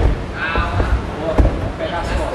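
A few dull thuds of bodies and limbs hitting the mat as two grapplers scramble, the sharpest about one and a half seconds in. Voices call out over them.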